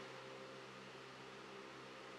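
Quiet room tone: a faint, steady hiss with a low hum underneath.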